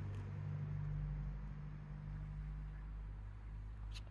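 A steady low mechanical hum of a running motor or engine, easing off slightly a little past halfway.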